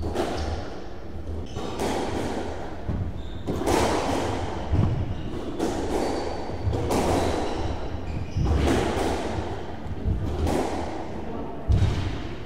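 Squash ball struck by rackets and thudding off the court walls, a hit every second or two, each one echoing in the enclosed court.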